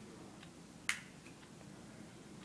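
A single sharp click about a second in, with a fainter tick just before it, from fingers picking at a roll of sticky tape.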